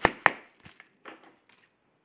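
Two sharp snaps about a quarter second apart as a padded bubble-mailer envelope is handled, followed by a few faint rustles of the envelope.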